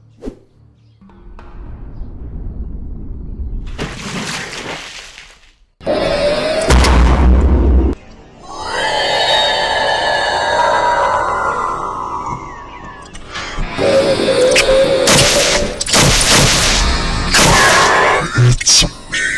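Dramatic music building into a heavy boom, then a long monster roar that slides in pitch about halfway in, followed by more loud crashing hits near the end.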